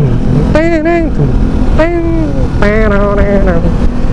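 Kawasaki Versys motorcycle engine running at steady cruise with wind rush on a helmet-mounted microphone, under a man's voice making several loud, drawn-out sung notes.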